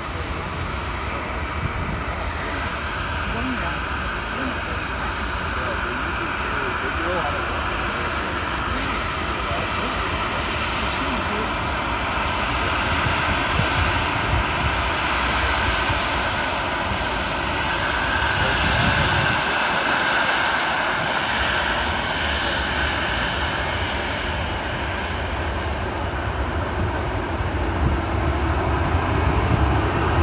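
The CFM56 jet engines of a Boeing 737-800 at taxi power as it rolls close by, a steady whine and rumble that grows louder toward the end.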